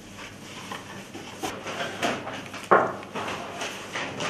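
Scissors cutting paper: a few separate snips, the loudest a little after halfway, with light paper rustling between them.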